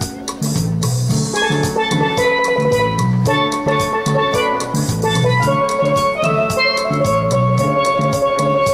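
Steel pan playing a melody of ringing, sustained notes over a backing track with a repeating bass line and a steady drum beat.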